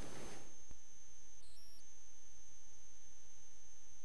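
Steady low electrical hum with a faint, thin high-pitched whine, and a brief faint high double blip about one and a half seconds in.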